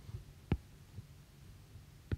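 Faint low hum with a single short tap about half a second in and a few weaker low knocks: a stylus touching the tablet while digits are written.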